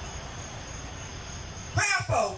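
A pause in amplified preaching, with a steady background hiss. Near the end a voice calls out briefly and loudly over the microphone.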